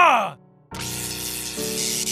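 The tail of a drawn-out shouted battle yell, falling in pitch and breaking off about a third of a second in. After a short silence, music comes in with a rushing, hissing noise over it.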